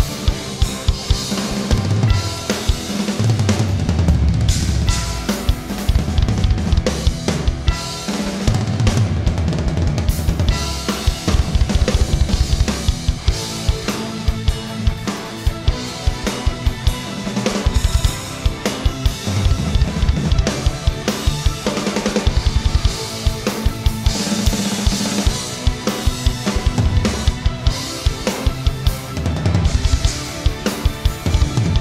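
Yamaha drum kit with Zildjian cymbals played hard in a fast rock song: snare, toms and crash and ride cymbals over quick runs of bass drum strokes. Recorded as a single unedited take and heard as a rough mix.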